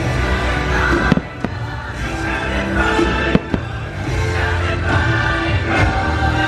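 A fireworks show's soundtrack music playing loudly, with several sharp firework bangs cracking over it, the strongest about a second in and around three and a half seconds in.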